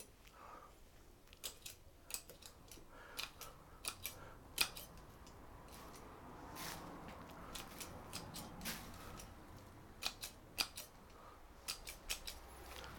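Bonsai shears snipping twigs and shoots off a Chinese elm bonsai during winter pruning: scattered sharp snips, some in quick pairs, with short pauses between.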